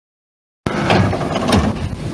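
Dead silence, then about two-thirds of a second in a loud run of knocks and rustling starts abruptly: handling noise and footsteps from a handheld camera carried through a hard-floored lobby.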